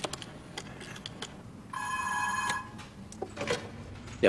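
A rotary telephone dial clicks as a number is dialled, then a telephone rings once, about two seconds in. A few clicks follow near the end, as a receiver is picked up.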